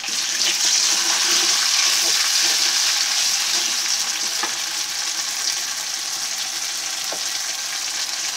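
Sliced onions sizzling in hot oil in an aluminium kadai as they are stirred with a spatula, being fried until they turn reddish-brown. The steady sizzle is loudest in the first few seconds, with occasional light ticks of the spatula against the pan.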